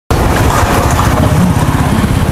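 A small engine running loud and close, with rapid, even firing pulses.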